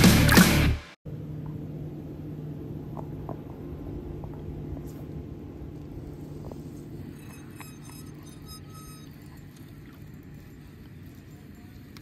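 Heavy rock intro music that cuts off about a second in, followed by a steady low hum and outdoor noise on a fishing boat on calm water, with a few faint clicks in the middle.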